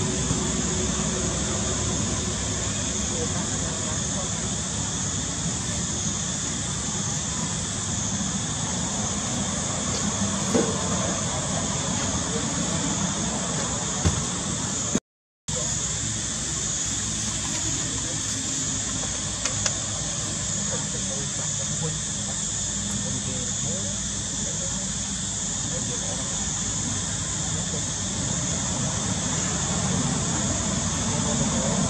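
Steady background hiss with a low rumble, cut off by a brief dropout about halfway through.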